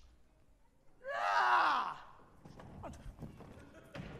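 A person's loud, high-pitched wordless cry, about a second long, about a second in, wavering and dropping in pitch at its end, followed by a few faint knocks.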